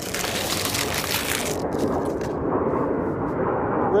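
Paper burger wrapper rustling and crinkling for about the first second and a half, over a steady low roar of a passing airplane that continues throughout.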